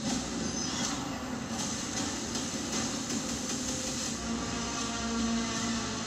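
Film trailer soundtrack: a dense, steady, machine-like noise with a low held tone that grows stronger about four seconds in.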